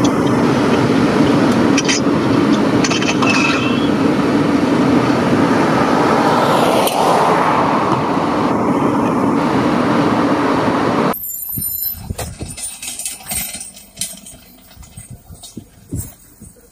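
Steady street traffic noise: motor vehicle engines and tyres, with a vehicle passing about seven seconds in. About eleven seconds in it cuts off abruptly to a much quieter stretch of scattered knocks and clicks.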